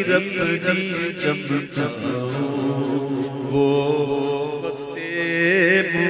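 A man's voice singing an Urdu naat, a devotional poem in praise of the Prophet Muhammad, in a melodic chant, with long held, wavering notes in the second half.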